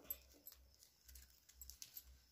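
Near silence with a few faint clicks and rustles of flat plastic craft wire being handled and pulled through a weave.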